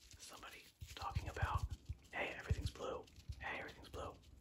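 Close-up whispering mixed with a blue mesh sponge being handled right at the microphone; a run of soft low thumps comes about a second in as the sponge is pressed and rubbed.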